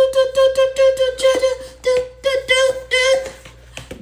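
A woman's voice chanting a fast string of syllables on one steady pitch, like a mouthed rap beat, which dies down near the end.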